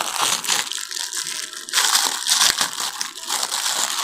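A pack of glasses being crinkled and pulled open by hand: a dense, irregular run of crackles and small clicks.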